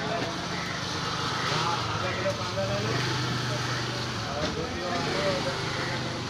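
People talking over a steady low engine hum, like a motor vehicle idling; the hum stops about four seconds in.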